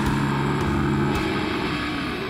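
Heavily distorted guitars and bass holding a low chord that breaks off about a second in, leaving a dense, grinding distorted noise as the slam death metal track winds down.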